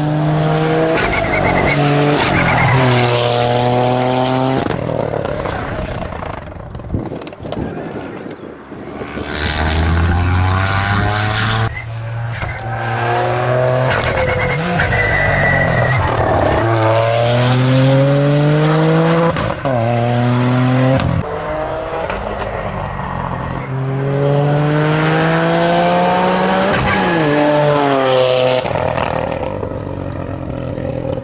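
Toyota GR Yaris rally car's turbocharged three-cylinder engine accelerating hard through the gears in several bursts, its pitch climbing and then dropping at each gearchange. It is loudest as the car passes close by mid-way.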